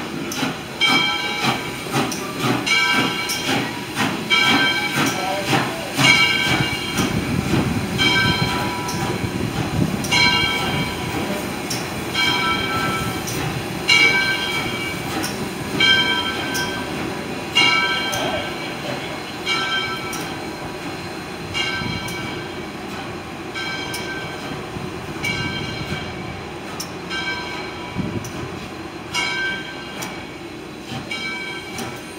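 Bell of steam locomotive Southern 630, a 2-8-0, ringing steadily about once a second over the low rumble of the rolling train. The rumble eases in the second half as the train slows.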